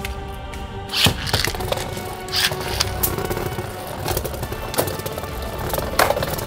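Background music, with two Beyblade spinning tops launched into a plastic stadium about a second in, then spinning with a few sharp clicks and knocks.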